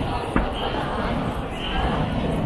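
Crowd of many people talking at once, a steady din of overlapping voices, with one sharp knock about half a second in.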